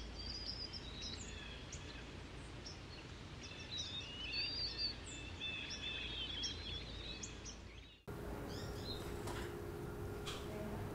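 Birds chirping in many short, high calls over a steady background noise. About eight seconds in, the sound cuts off abruptly and a different steady background hum takes over.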